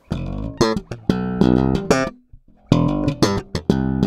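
Sterling by Music Man Sub Series StingRay 4 electric bass played as a short riff of plucked notes. The riff stops for about half a second midway, then picks up again.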